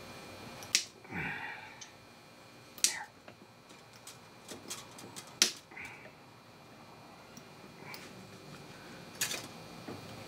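Needle-nose pliers and small metal parts clicking against an outboard motor's powerhead as a plugged passage is probed: about four sharp, irregularly spaced clicks with faint handling noise between.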